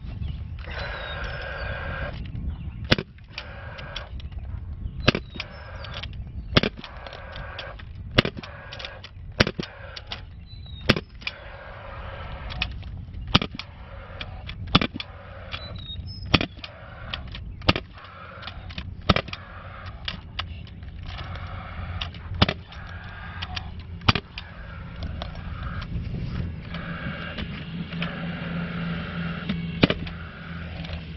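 Power fencing stapler firing staples through woven wire into a wooden post: about a dozen sharp shots, one every second and a half or so, with a longer pause near the middle.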